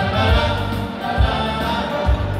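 Music: a group of voices singing together over a band, with a low drum beat a little under once a second.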